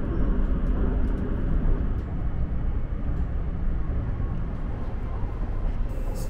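Running noise of the Nankai rapi:t (50000 series) electric train heard from inside the cabin at speed: a steady low rumble of wheels on rails.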